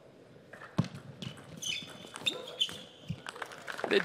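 Table tennis rally: a celluloid-type plastic ball being struck by rackets and bouncing on the table, sharp clicks about twice a second. A voice comes in at the very end.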